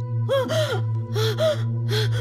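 A woman gasping for breath in a run of about five short, quick, voiced gasps, each with a catch in the voice, the panting of someone in distress.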